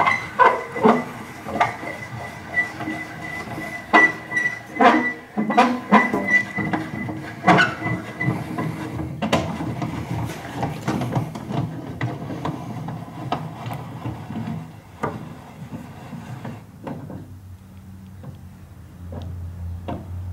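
Table saw's blade-tilt mechanism being cranked over toward a 45-degree bevel: repeated metallic clicks and knocks with a faint high squeal through the first half, then a lower, steadier rattle of the gearing that quiets near the end.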